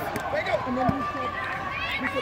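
Overlapping voices of several people, children among them, chattering and calling out with no clear words.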